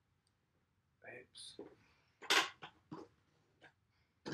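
A man's voice speaking a few short, low words, after about a second of near silence, with one louder breathy sound about halfway through.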